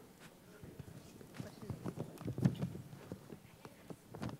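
Irregular, scattered knocks and thumps in a large room, with a denser cluster a little past the middle, and faint voices underneath.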